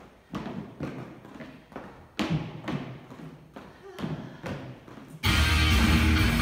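Sneakers thumping and tapping on a plastic aerobic step platform as she steps up and down, a series of separate knocks. About five seconds in, loud music starts abruptly.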